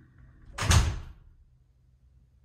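A door shutting: a single heavy impact a little over half a second in, dying away within about half a second.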